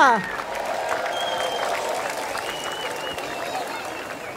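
Audience applauding, slowly tapering off, with faint voices in the crowd. The end of the host's drawn-out announcement falls away at the very start.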